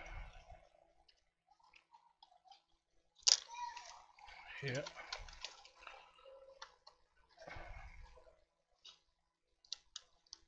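Plastic handling sounds as a laptop keyboard is unclipped from its ribbon-cable connector and lifted out of the deck. There is one sharp click with a short rustle about three seconds in, more rustling near eight seconds, and a few faint light clicks.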